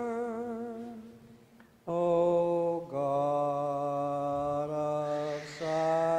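Byzantine liturgical chant: a voice sings long held notes, the first wavering and fading out about a second in, then after a short pause lower notes sustained for several seconds each.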